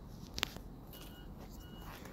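Quiet outdoor background noise with one sharp click about half a second in and two faint, short high beeps in the middle.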